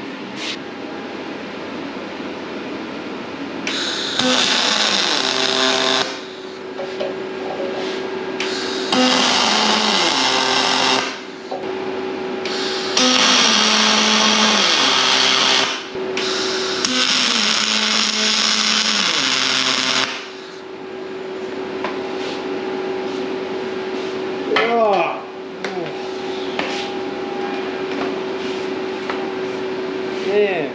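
Welding arc crackling in four runs of about two to three seconds each, with short pauses between, over a steady hum.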